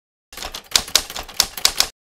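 Typewriter sound effect: a quick, irregular run of key clacks that starts after a moment of silence and stops abruptly just before the end.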